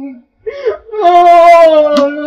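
A woman crying aloud: a short sob about half a second in, then one long, loud wail held nearly on one pitch from about a second in.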